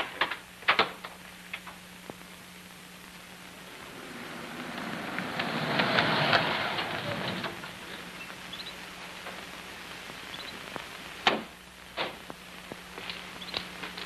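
A car driving up and stopping: its engine and tyre noise swells to a peak about six seconds in and dies away. A few sharp knocks follow near the end, over a faint steady hum.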